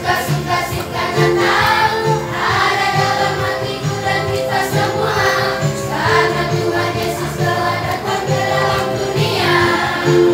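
Children's and teens' choir singing an Indonesian Christmas song together over an instrumental accompaniment with a steady, pulsing bass line.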